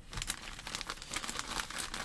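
Clear plastic packaging crinkling as it is handled, a dense run of small crackles.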